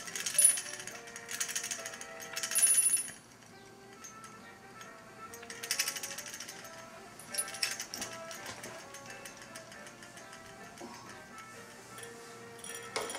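A dog nudging a bell with its face, setting it jingling in about five short bursts, the first three close together and the loudest, two fainter ones a few seconds later. Faint background music runs underneath.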